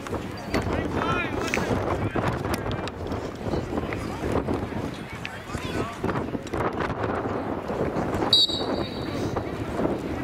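Indistinct voices of players and spectators calling out, then a referee's whistle blows once for about a second, a little past eight seconds in, signalling the start of the faceoff.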